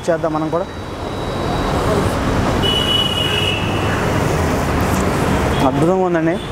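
Road traffic noise that swells about a second in and then holds steady, with a brief high tone near the middle.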